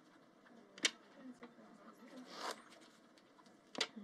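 Two sharp clicks about three seconds apart, with a brief soft swish between them, over a quiet room.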